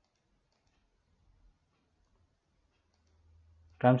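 Near silence: room tone with a few faint clicks from a computer mouse and keyboard.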